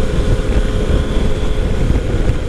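Yamaha FJ-09's 847 cc inline three-cylinder engine running at a steady cruise, with a low wind rumble on the microphone.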